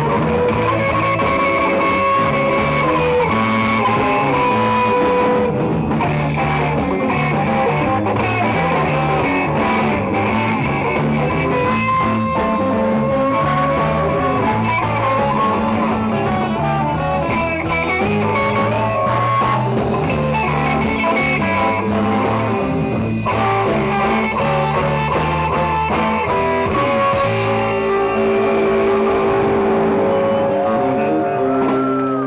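Live blues band playing: an electric guitar solo of held and bending notes over bass and drum kit.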